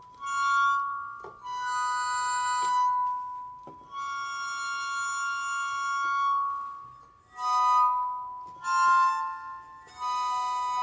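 Bowed, water-tuned wine glasses sounding sustained, ringing glassy tones. There are about five long notes of one to three seconds each, with short breaks between them, and a cello solo above.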